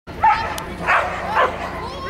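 A dog barking three times in quick succession, about half a second apart.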